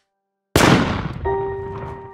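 A single loud, deep cinematic boom hit, a trailer-style impact sound effect, lands abruptly out of silence about half a second in and dies away slowly. A held piano note enters about a second later.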